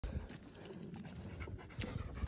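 A Doberman panting faintly, out of breath after running up a hiking trail.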